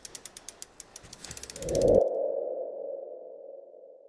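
Animated logo-reveal sound effect: a run of sharp mechanical ticks that speed up over about two seconds, then a swell into a held mid-pitched tone that slowly fades away.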